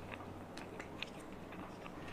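A few faint, scattered clicks and small handling noises from a kajal pencil and a plastic compact mirror being picked up and held, over a low steady hum.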